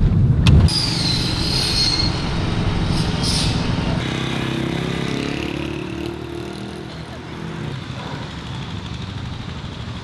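Car running on the road, heard from inside the cabin as a heavy low rumble, with a brief high squeal about a second in. About four seconds in it gives way to quieter outdoor street ambience with a faint engine hum.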